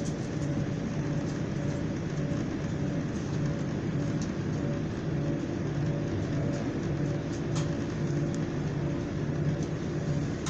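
Inside a Class 175 diesel multiple unit running at speed: the steady drone of its underfloor diesel engine over the rumble of wheels on rails, with a few faint clicks.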